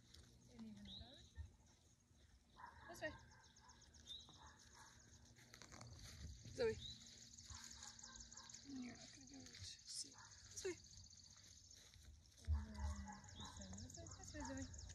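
Faint open-field ambience: short chirping bird calls and pitch glides over a high, steady trill, with a soft low thump near the end.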